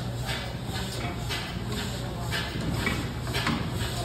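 Belt-driven line-shaft machinery running: a steady low hum with light, irregular clacks as the flat belts run over their pulleys.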